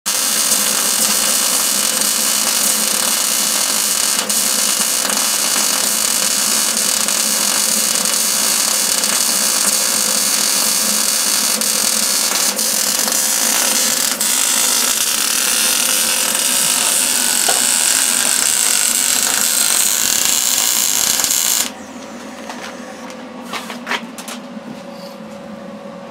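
Wire-feed welder's arc running in one long continuous weld on steel, with a few momentary dips, stopping suddenly about 22 seconds in; a few faint clicks follow.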